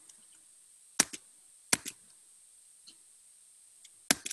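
Computer clicks picked up by an open microphone on a video call: two pairs of sharp clicks, about a second in and again just before two seconds, then one fainter click near three seconds, over a faint steady hiss.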